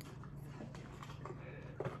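Faint sounds of a person drawing on a vape pen held at the lips: soft breath and lip noises, with a short sharper sound near the end, over a steady low hum.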